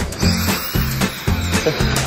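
Background music with a steady, regular bass line.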